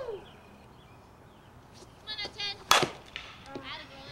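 A softball bat striking a pitched ball: one sharp, loud crack with a short ring, a little under three seconds in. Short voice calls come just before and after it.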